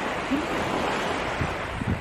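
Small sea waves washing on a beach as a steady surf hiss, with wind rumbling on the microphone in the second half.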